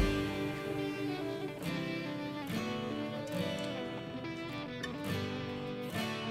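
Background music with plucked guitar.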